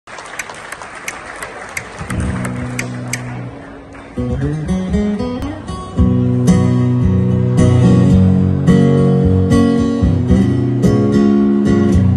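Live acoustic guitar playing country chords, with a male voice singing low over it from about four seconds in and the music growing louder about two seconds later. It opens quietly with a run of light taps, about two or three a second.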